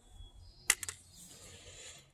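A small smelted copper button set down on the metal platform of a digital pocket scale: one sharp click about two-thirds of a second in, followed quickly by two lighter ticks.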